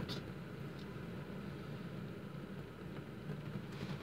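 Faint, steady low hum of a car's cabin, with no distinct clicks or knocks.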